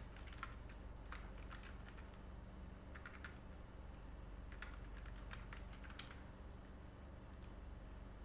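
Computer keyboard typing, faint: scattered key clicks in short runs, over a low steady hum.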